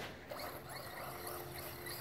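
Traxxas Stampede RC monster truck landing in grass and rolling on. It is faint, and a thin steady whine from its motor comes in about halfway.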